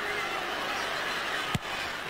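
Steady crowd noise from the stands at a Gaelic football match, with one sharp click about one and a half seconds in.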